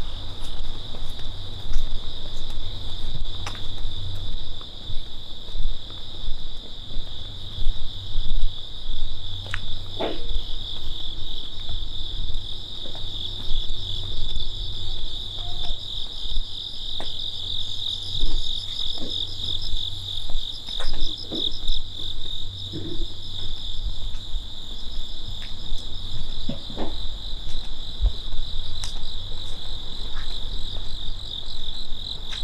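Crickets chirping in a steady, high chorus, with an uneven low rumble underneath and a few faint scattered clicks.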